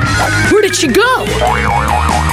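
Comedy background music with a steady bass line, over which cartoon boing sound effects bend up and down in pitch several times, ending in a quick warbling wobble.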